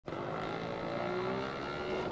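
Isuzu fire engine's engine running as the truck drives slowly up the street, a steady note that rises slightly in pitch.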